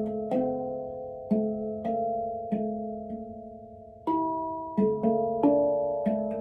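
Steel handpan struck with soft mallets, playing a slow, unhurried run of single notes that ring on and overlap one another. About four seconds in, a higher, louder note follows a short lull, then several notes come in quicker succession.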